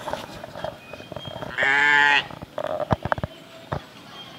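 A sheep bleats once, a single loud quavering call about a second and a half in. A few short sharp knocks follow from the penned flock.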